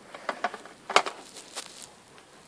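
Hands handling small plastic toy figures: a few faint clicks and taps about a second apart, over quiet room tone.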